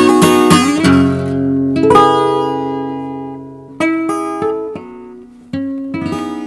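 Acoustic guitar with a capo, fingerpicked: a quick run of notes with a slide up about a second in, then a chord at about two seconds left to ring. A few single notes follow, spaced out and each left to fade.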